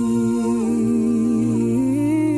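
A cappella vocal group humming sustained chords without words over a steady low bass note, the parts stepping to a new chord near the end.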